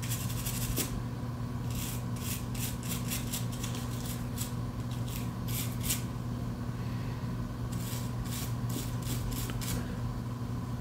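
Toothbrush bristles scrubbing the inside of a plastic key fob shell in quick back-and-forth strokes, in several runs with short pauses between them, over a steady low hum.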